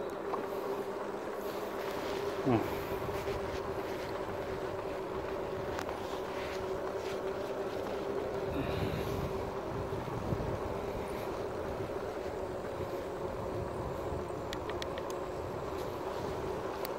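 Riding noise of a RadMini electric fat bike: its rear hub motor whines steadily at one pitch, over the rumble of the fat tyres rolling on rough, cracked asphalt.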